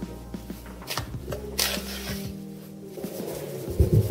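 Metal spoon stirring dry flour mix in a wooden bowl, a soft scratchy rustle and scrape, over steady background music; a low bump comes just before the end.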